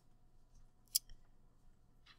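Quiet room tone with one brief, sharp click about halfway through.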